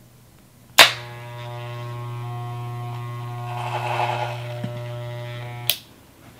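Corded electric hair clippers switched on with a click about a second in, buzzing steadily and a little louder in the middle, then switched off with a click near the end.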